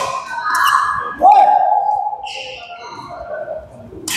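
Sounds of a doubles badminton game in a large hall: voices on and around the court, with one long high-pitched squeak or call starting about a second in.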